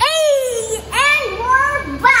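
A young child's voice making high, gliding vocal sounds without clear words.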